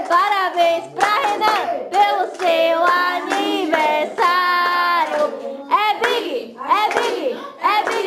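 A voice singing, with one long held note a little past the middle.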